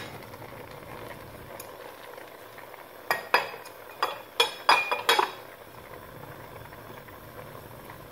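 Spinach stew simmering in a stainless steel pot with a steady low bubbling hiss. Halfway through comes a quick run of about seven sharp, ringing clinks as a cooking utensil knocks against the pot while the freshly added okra is stirred in.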